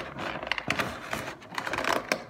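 Clear plastic toy packaging crackling and clicking irregularly as hands work an action figure out of it.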